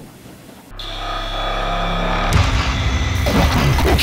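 Cinematic intro sting: a low droning hum starts suddenly about a second in and swells, then a heavy hit about two and a half seconds in opens a louder, busy stretch of sound effects.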